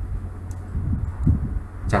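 Steady low hum with a faint click about half a second in and some soft low sounds near the middle, in a pause between words.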